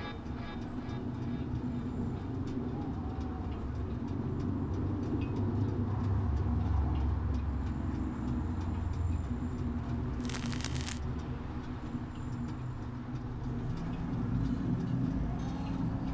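Low, steady rumbling ambience with a few faint held tones, swelling gently in the middle, and one short burst of hiss about ten seconds in.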